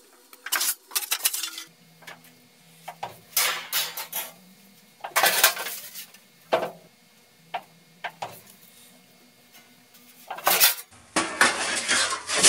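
Sheet-metal clatter at a hand brake: a series of irregular metallic clanks and rattles from the brake and the steel sheet as the Pittsburgh lock flange is folded flat and the sheet is shifted and slid into the brake.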